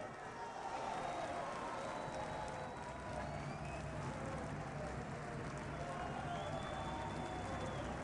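Arena crowd noise: a steady murmur of many voices with scattered calls, no sharp burst of applause. A high, steady tone is held for about a second and a half near the end.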